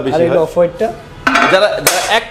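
Hard ceramic clinking and clattering, like glazed tiles knocking together, with one sharp knock near the end, over talking voices.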